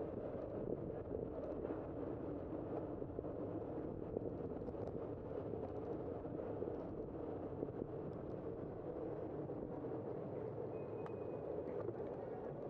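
Steady wind and road noise on the microphone of a bicycle-mounted camera while riding down a city street, with faint scattered ticks. Near the end there is a short high beep.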